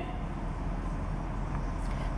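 Steady background noise: a low, even hum and hiss with no distinct events.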